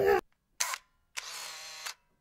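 Edited logo-intro sound effect: a short whoosh, then a steady electronic tone of several notes held for under a second that cuts off suddenly.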